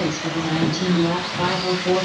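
A man's voice talking, drawn-out and sing-song, as a race announcer reading out places and lap times.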